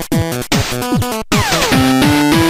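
Electronic logo-animation music: a fast kick-drum beat under short stepped synth notes, with a long falling synth sweep about two-thirds of the way in that lands on held notes.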